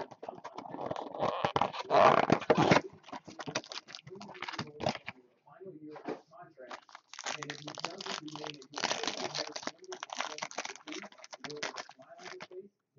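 Foil wrapper of a Topps Supreme Football card pack crinkling and being torn open, loudest and densest in the first three seconds, then in sparser crackles. A low voice is heard under the crinkling near the end.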